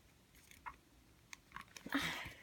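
Faint, scattered small clicks and ticks of fingers handling and prying at a small plastic toy figure while trying to open it.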